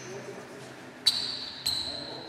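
Table tennis ball bouncing twice, about half a second apart, each bounce a sharp click with a brief ringing tone.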